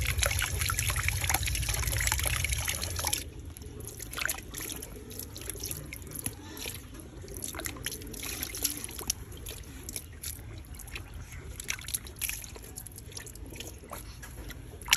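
Water dripping and trickling off wet fish lifted by hand from a basin of water, with scattered small drips and splashes. The first three seconds are louder, with a low rumble under the water sounds.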